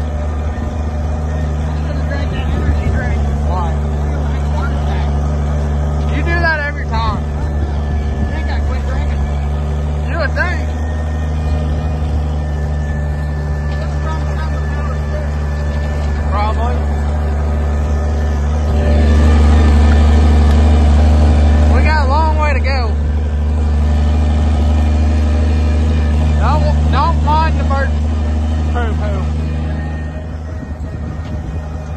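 Farm tractor engine running steadily under load while pulling a wheel hay rake, growing louder for a few seconds about two-thirds through. Brief voice-like calls come through over it several times.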